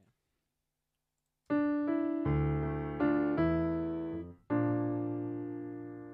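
Virtual piano playing back a MIDI piano part: chords start about a second and a half in and ring into each other under the sustain pedal. Just before the last chord the sound cuts off sharply, as the edited pedal lifts at the chord change, and the new chord rings on and slowly fades.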